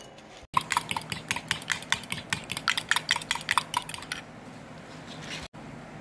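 Metal spoon whisking three raw eggs in a ceramic mug: a fast run of clinks, several a second, as the spoon strikes the sides, stopping about four seconds in.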